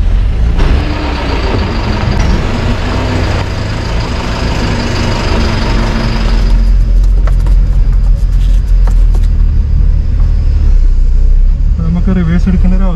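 Heavy truck's diesel engine running close by with a deep steady rumble. A loud hiss lies over it and stops about six and a half seconds in, leaving the rumble with a few sharp clicks.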